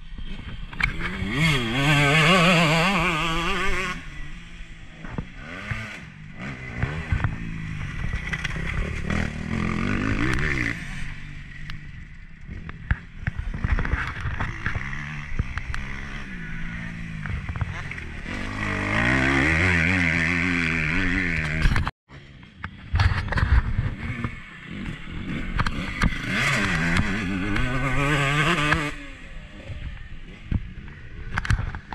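Husqvarna 125 motocross bike's engine heard from on board, revving up and down as it is ridden round a dirt track: the pitch climbs in repeated bursts of acceleration and falls back between them, loudest at three hard pulls.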